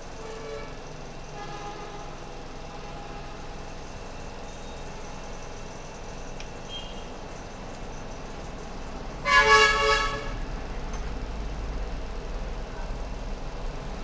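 A vehicle horn honks once, loud, for about a second a little past halfway, over a steady low rumble of background traffic.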